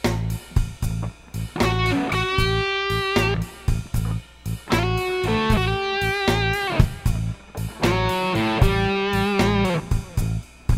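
Electric guitar playing a slow blues lick built on the root, sixth and flat seventh, over a bass and drum groove. Long held notes are shaken with vibrato near the end, and phrases close with notes sliding down.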